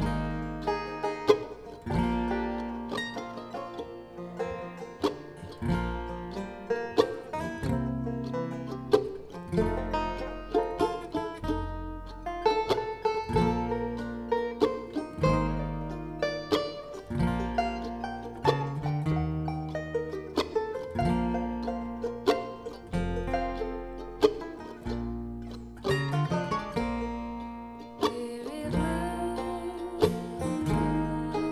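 Bluegrass string band playing a slow instrumental opening on banjo, mandolin, acoustic guitar and upright bass, with the bass plucking low notes at a steady, unhurried pace under the picked strings.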